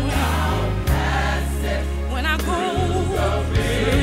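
A gospel mass choir singing with instrumental backing, held low notes changing under the voices.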